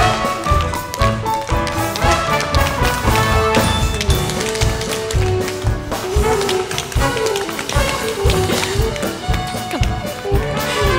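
Tap dancing: quick runs of taps and stamps from tap shoes on a wooden stage floor, over a live pit orchestra playing swing-style dance music.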